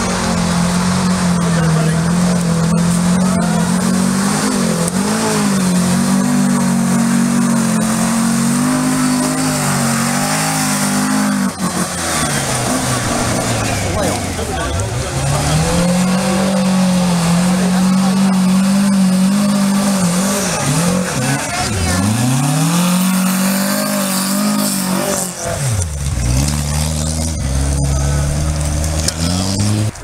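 VW Beetle's air-cooled flat-four engine revving hard under load on a muddy climb. The revs sag and pick up again several times, around the middle and near the end.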